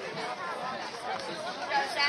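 Spectators talking over each other, several voices in indistinct chatter with no clear words.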